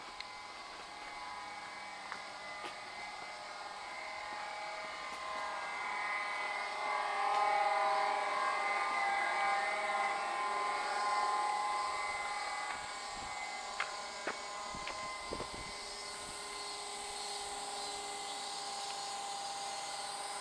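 A drone of several steady tones that swells to its loudest about halfway through and then fades back down, with a few light clicks later on.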